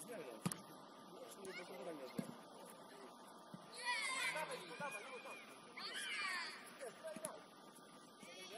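Footballers' shouts from across the pitch, high and strained, in two bursts about halfway through and again a second or two later, with a sharp thud of the ball being kicked about half a second in.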